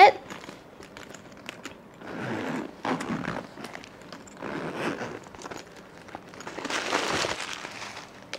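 The zip of a lambskin Chanel vanity case being pulled open around its lid in a few short pulls. Crinkling paper and small clicks come with it.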